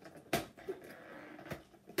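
Fingers working at a cardboard advent-calendar door: a few sharp taps and clicks, the loudest about a third of a second in.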